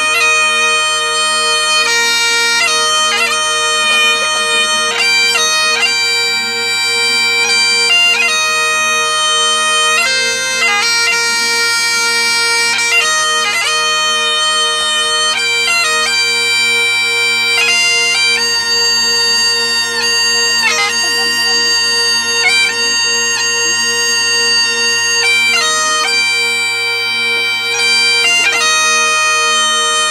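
Bagpipes with three drones playing a slow melody over their steady drone, the chanter's notes held for a second or two each.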